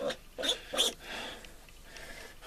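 A piglet held in the hands gives three short calls in quick succession within the first second.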